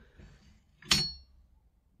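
One sharp metallic click with a short ring about a second in: the folding metal stock of an EK Vlad crossbow snapping into its folded position.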